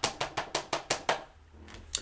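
Fingertip tapping rapidly on the cover of a paperback book, a run of light clicks about six or seven a second that stops a little after a second in.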